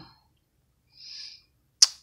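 A pause between a woman's words: a short, faint in-breath about halfway through, then a single sharp mouth click just before she speaks again.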